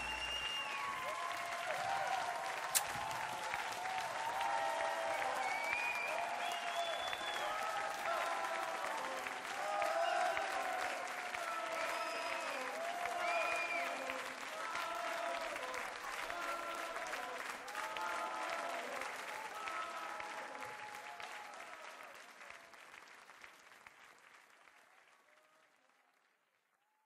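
Audience applauding, with voices shouting and cheering over the clapping, at the end of a live song. The applause fades out over the last few seconds.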